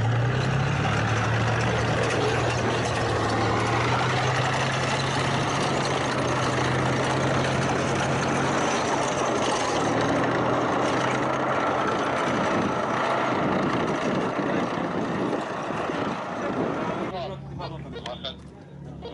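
Tank's diesel engine running loud and steady as the armoured vehicle drives past close by, with a low hum under the engine noise; it drops off near the end.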